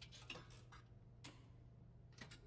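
Faint clicks of jukebox buttons being pressed by hand, three or four over two seconds, over a low steady hum.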